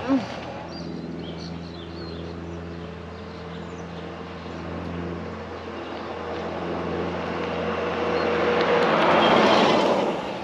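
Electric golf cart driving along with a steady multi-pitched motor hum, then tyre and road noise swelling as it approaches and passes close by near the end.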